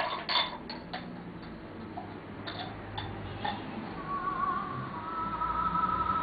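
A string of sharp clicks and taps from hard massage tools knocking together over the first few seconds. Background music with a high singing voice comes in about four seconds in and carries on.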